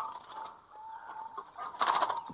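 Faint bird calls: a few thin, short notes over a quiet background.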